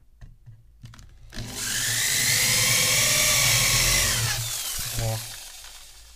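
Corded electric drill boring a hole through a piece of laminate flooring, running for about three seconds, its whine rising as it spins up and dropping away as it stops. A few light taps come before it.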